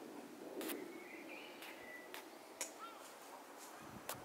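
Faint outdoor background with a few short, sharp clicks and a bird chirping faintly, once about a second in and again near three seconds.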